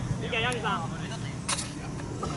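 A raised voice calling out on an outdoor football pitch, with a steady low rumble beneath and a short sharp noise about one and a half seconds in.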